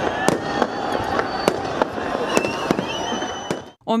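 Fireworks going off: a string of sharp bangs about every half second over the steady noise of a large outdoor crowd, with a few whistles gliding through. It cuts off suddenly just before the end.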